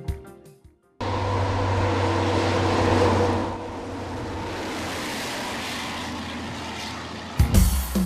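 A bus driving past: steady engine and road noise with a low hum, loudest about two seconds in, then dropping to a quieter, even level. Background music fades out at the start and comes back in near the end.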